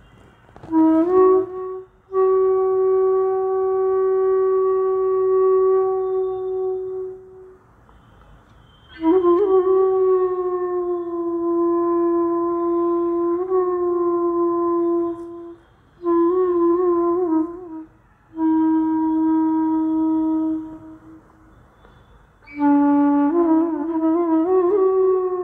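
Solo flute playing raga Jhinjhoti: long held low notes with wavering and gliding ornaments, in phrases broken by short pauses.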